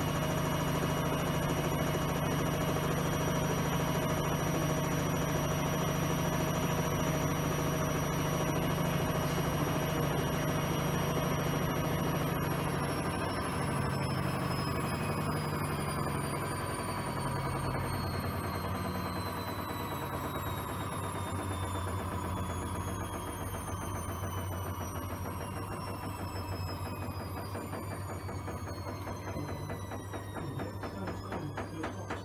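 Front-loading washing machine running with water and suds in the drum: a steady motor whine with a low hum. About halfway through, the whine starts to fall slowly in pitch and the sound gradually quietens.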